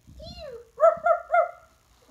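A small dog whines with a falling pitch, then yips three times in quick succession.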